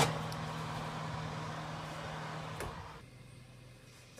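Fan oven running with a steady hum, with a sharp knock at the start as the metal cake tin goes onto the oven rack and a smaller knock about two and a half seconds in; the hum fades near the end.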